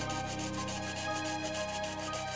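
Hand saw cutting a branch in repeated back-and-forth strokes, with background music playing.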